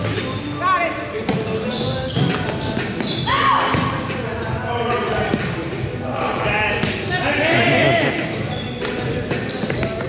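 Volleyball rally in a gymnasium: the ball is struck several times with sharp, echoing hits, and players' voices call out between the contacts.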